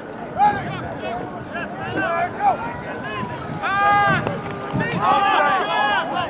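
Several voices shouting and yelling over one another, with one long, high-pitched yell about halfway through and a burst of overlapping shouts near the end.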